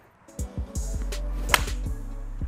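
Background music with a steady bass comes in about half a second in. About a second and a half in comes a single sharp impact: a seven iron striking a golf ball off a range hitting mat.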